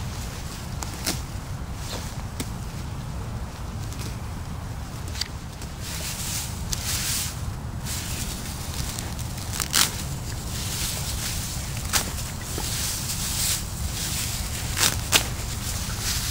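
Dry broom sedge grass rustling and crackling as it is gathered and cut by hand, with a few sharp snaps of stalks scattered through, over a steady low rumble.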